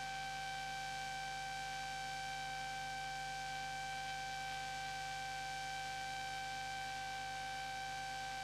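A steady hum with a thin high whine over faint hiss, unchanging throughout. This is the background noise of an old film soundtrack, with no location sound of the machinery.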